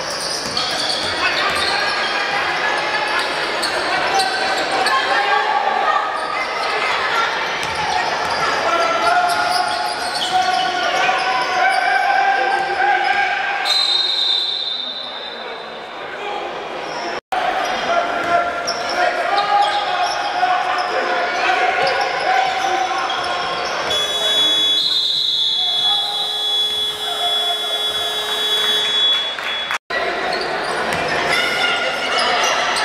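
A basketball being dribbled on a hardwood court, with voices echoing through an indoor arena. A steady high tone sounds briefly about midway and again for several seconds near the end.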